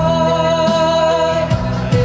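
Live band music with singing: acoustic guitar, electric guitar and a Roland keyboard playing together, with one long held note through the first half.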